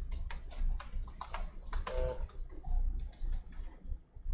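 Typing on a laptop keyboard: irregular key clicks over a steady low hum.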